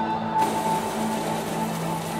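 An electric coffee grinder's motor starts about half a second in and runs steadily, grinding coffee beans, under background music.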